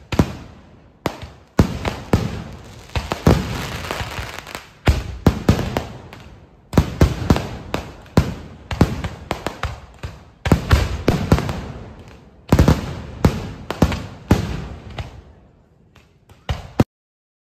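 Aerial fireworks shells bursting in rapid volleys: sharp bangs in dense clusters with crackling between them, with short lulls between volleys, dying away near the end.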